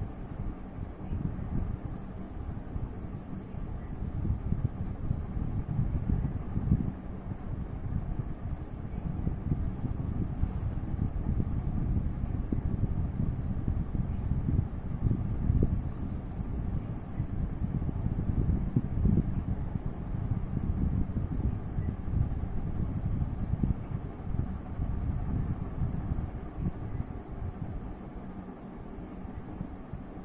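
Low, uneven rumbling noise of air buffeting the microphone, with three brief high trills: about three seconds in, midway, and near the end.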